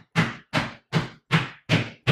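Sneakered feet smacking flat onto a bare floor in quick stiff-legged pogo jumps: a steady run of sharp landings, five or six of them at just under three a second.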